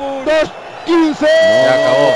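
A male radio commentator's voice: a few short words, then a long, steadily held shout starting about a second and a half in.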